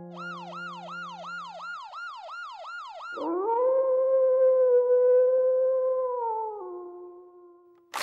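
A rapid run of about ten falling chirps, about three a second, then a long howl that glides up, holds steady, drops a step in pitch and fades away.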